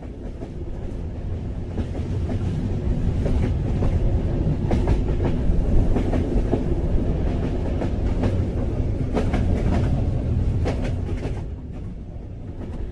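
Train sound effect: a railway train running, with a heavy rumble and wheels clacking irregularly over the rail joints. It swells in at the start and eases off near the end.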